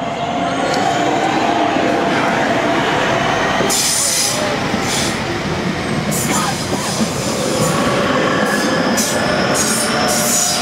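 Southeastern electric multiple unit departing and passing close by, a steady rumble of wheels on rail with traction noise. Short high-pitched wheel squeals come several times, from about four seconds in.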